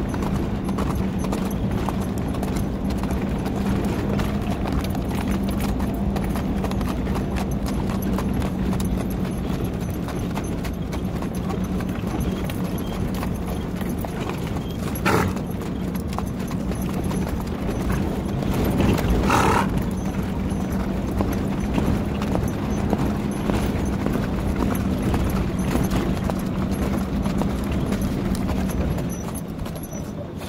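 Hoofbeats of an Arabian colt cantering and trotting under a rider on sandy ground, a continuous run of hoof strikes over a steady low hum.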